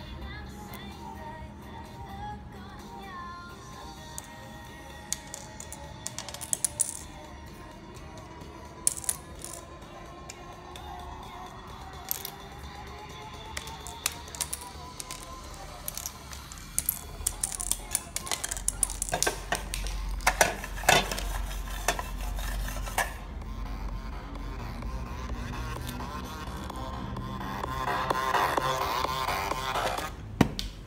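An electronic dance track plays, with a deep bass coming in a little past halfway. Over it come sharp taps and clicks of fingers striking small plastic cube pieces on a table.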